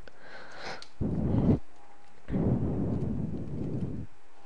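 Two bursts of rumbling noise on the microphone, a short one about a second in and a longer one of about a second and a half after it, with a few faint ticks in between.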